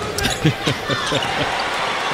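A basketball bouncing on a hardwood court during live play, with a few sharp thuds in the first half-second, over steady arena background noise.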